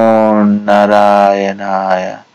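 A man chanting a mantra in long, steady held tones: two drawn-out phrases with a short break about half a second in.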